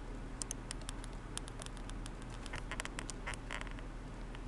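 Stylus tapping and scratching on a tablet screen while handwriting: an irregular run of light, quick clicks, busier in the second half.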